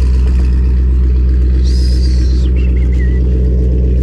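Chevrolet Corvette V8 idling steadily after its cold start, warmed up.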